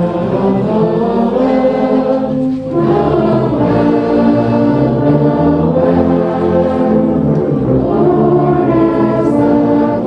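A massed ensemble of tubas and euphoniums playing a Christmas carol in held, sustained chords, with deep bass notes under the melody.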